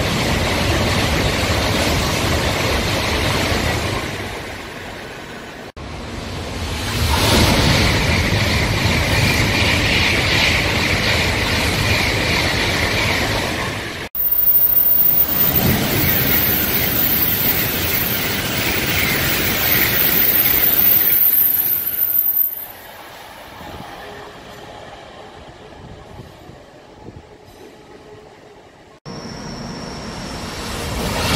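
Shinkansen high-speed trains (white with a blue stripe) passing at speed, in separate clips joined by sudden cuts. The first pass fades out in the opening seconds. A second train rushes by with a steady high whine over the wind noise. A third passes along a station platform and then dies down to a quieter stretch. Near the end, the next train's rising approach begins.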